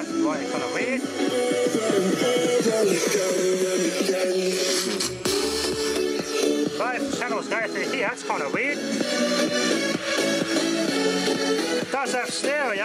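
Electronic music with a gliding vocal line, playing steadily from a Sharp Twincam boombox's speakers during a playback test.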